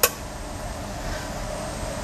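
A laboratory power supply being switched off with one sharp click, then steady room ventilation noise.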